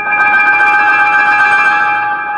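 Grand piano: a high chord struck just after the start, with a few quick notes above it, then left ringing and slowly fading with a bell-like tone.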